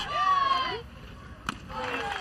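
A high voice calls out from the crowd or dugout. About a second and a half in comes a single sharp pop as the pitch smacks into the catcher's mitt on a swinging strike three.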